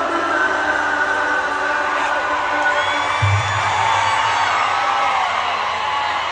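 Live regional Mexican band music played over a concert PA and heard from within the crowd, with whoops from the audience and a deep bass hit about halfway through.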